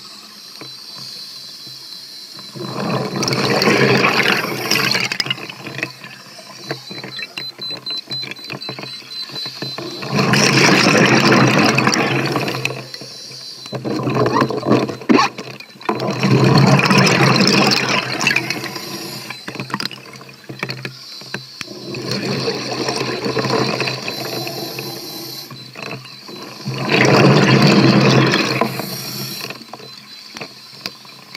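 Scuba diver breathing underwater through a regulator: the exhaled bubbles come in five long rushes of two to three seconds, about every six seconds, with quieter hiss in between.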